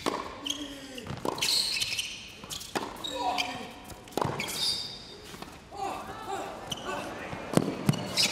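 A tennis rally: a tennis ball struck back and forth with rackets, a sharp hit about every one to two seconds, five in all. Most hits are followed by a short grunt from the player.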